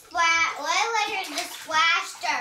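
A young child's high-pitched voice, drawn out in sing-song rises and falls.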